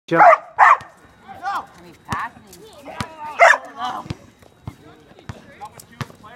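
A border collie barking in short bursts, several times.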